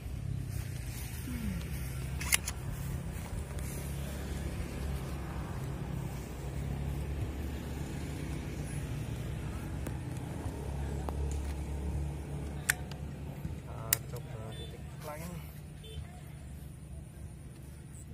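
A steady low motor hum, with a few sharp clicks from handling a Thunder air rifle while its power is being turned up and it is readied to shoot.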